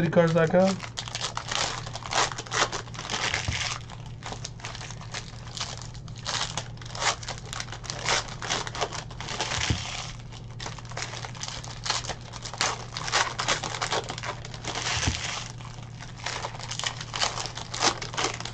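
Plastic trading-card pack wrappers crinkling and tearing as packs are ripped open, in irregular rustling spurts, while cards are handled and stacked. A steady low hum runs underneath.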